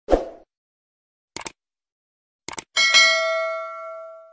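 Subscribe-button animation sound effects: a soft thump at the start, two quick double clicks about a second apart, then a bell notification chime that rings on and fades out.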